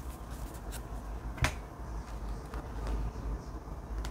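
Tarot cards being handled and laid on a table: a few soft clicks and one sharp card snap about one and a half seconds in, over a low steady hum.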